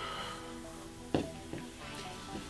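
Soft background music of steady held tones, with one brief sharp knock about a second in.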